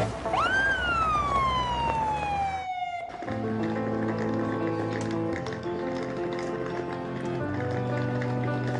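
A police car siren gives a single wail, rising quickly and then falling slowly for about two and a half seconds before it cuts off. Background music plays under it and carries on afterwards.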